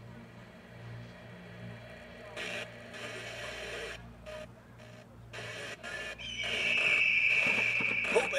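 Radio-style sound design from the show's amplified soundtrack: noisy, broken radio sound with a low hum underneath, then a loud, steady high tone from about six seconds in.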